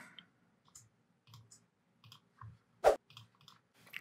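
Scattered faint clicks of a computer mouse, with one sharper, louder click about three seconds in.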